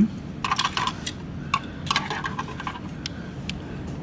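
Hard plastic parts of a Transformers Premier Edition Voyager Optimus Prime figure clicking and clattering as they are moved by hand: a quick cluster of small clicks in the first two seconds, then a few single ticks.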